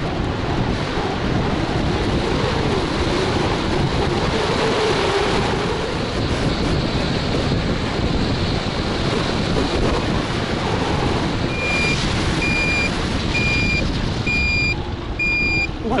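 Wind rushing over the microphone on a moving Econelo DTR electric scooter, with a faint motor whine rising in pitch as it speeds up. Late on, the scooter's turn-signal beeper starts: evenly spaced high beeps, a bit under two a second.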